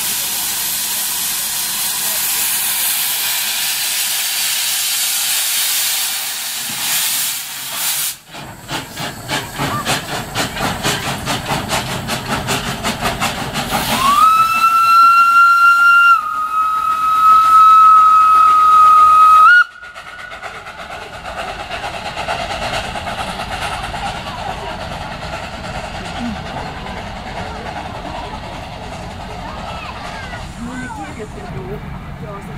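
Small steam tank locomotive blowing off a loud hiss of steam for several seconds, then working with an even run of exhaust chuffs. About 14 seconds in its steam whistle sounds one long blast of about five seconds, which stops abruptly, and a fainter mix of chuffing and noise follows.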